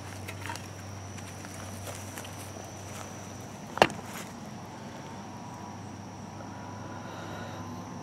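Quiet outdoor background with a thin, steady high tone and a single sharp click about four seconds in.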